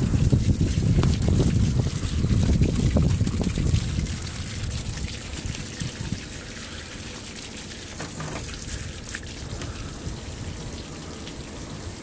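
Garden hose spraying water over a pile of tumbled native copper pieces on a wire-mesh screen, the water splashing and trickling through the mesh with scattered small clicks. A heavy low rumble fills the first four seconds, then the splashing goes on more quietly.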